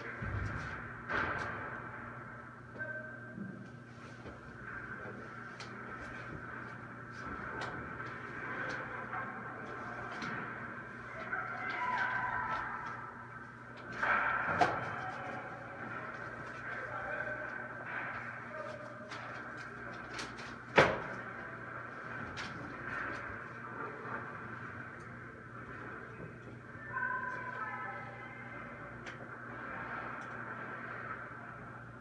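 Ice hockey practice: sticks and pucks give scattered sharp knocks against pads, net and boards over a steady low hum in the rink. The loudest is a single crack about two-thirds of the way through. Faint distant voices come in now and then.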